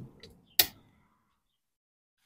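The lid latch of a Char-Griller Akorn Jr kamado grill snapping shut: a faint tick, then one sharp click about half a second in as the lid is locked down.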